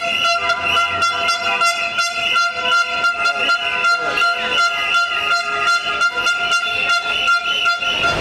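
Horns held in one long, unbroken, steady blare, with a rapid, uneven clatter of knocks beneath it, as at a noisy street protest.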